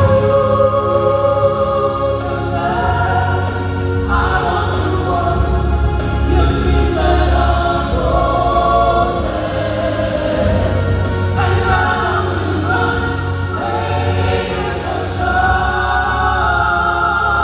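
A small mixed vocal group singing a gospel song in harmony, holding long notes, amplified through microphones and PA speakers.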